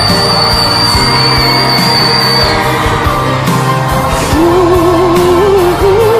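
A male singer holds a very high whistle-register note, a D8, steady over live band accompaniment; it cuts off about two and a half seconds in. He then sings on in a normal range with a wavering vibrato.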